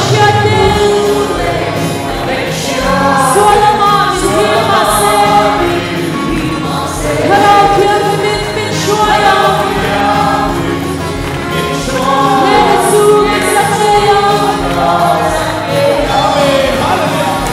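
Gospel worship song: many voices singing together with a band over a steady beat.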